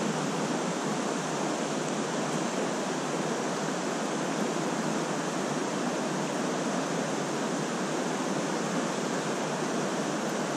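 Steady rush of flowing stream water running over a riffle.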